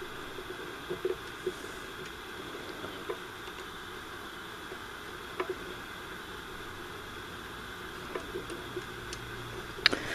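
Zenith A-410-L solid-state table radio on the FM band giving only a steady hiss from its speaker, with a few faint clicks as the tuning knob is turned. No station comes in anywhere on the dial, a sign that the FM section is not working while the audio section is.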